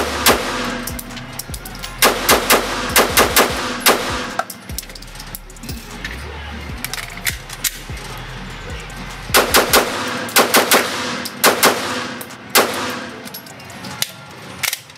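Smith & Wesson M&P 2.0 9mm pistol with a compensator fired in quick strings of shots, a couple near the start, about six in a row after two seconds, and two more fast strings in the second half, echoing in an indoor range. The gun is cycling on a 15-pound recoil spring.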